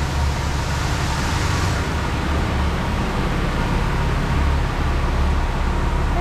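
Car wash dryer blowers running: a loud, steady rush of air over a deep rumble, the hiss brightest in the first two seconds.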